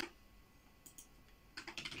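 Computer keyboard typing: a few quiet keystrokes about a second in, then a quick run of keys near the end.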